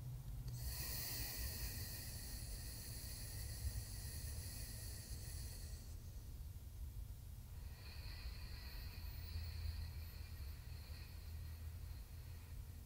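Slow, deep breaths drawn through one nostril in alternate-nostril breathing (nadi shodhana): one long airy breath of about five seconds, a pause, then a second of about four seconds. A steady low room hum runs underneath.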